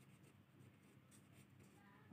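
Pen writing on notebook paper: faint, short scratching strokes as a word is written out by hand.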